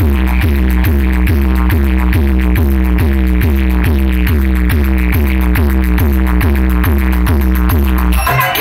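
Electronic dance music played very loud through a DJ roadshow sound system, heavy on the bass: a deep bass beat a little over twice a second, each beat carrying a short falling tone.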